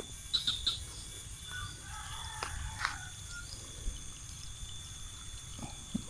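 Birds chirping faintly a few times, over a low steady rumble of outdoor background noise.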